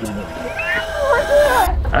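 A person's voice, whining and gliding up and down in pitch, over a steady tone and hiss that cut off suddenly near the end.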